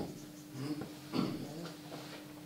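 A marker writing on a whiteboard: a few short, faint strokes.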